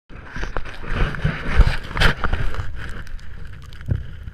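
Handling noise on an action camera: a gloved hand rubbing and knocking near the microphone, with a low rumble and irregular thumps that ease off toward the end.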